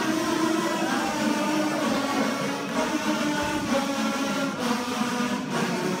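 A large ensemble of kazoos playing together, a buzzing chorus of held notes that change pitch every second or so.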